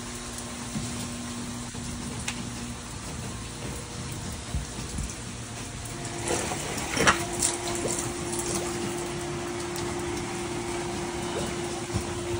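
Steady rush of rain and water around a small electric submersible pump set in a flooded stairwell drain. About six seconds in, a steady low hum sets in as the pump starts, with a sharp knock a second later as it is handled.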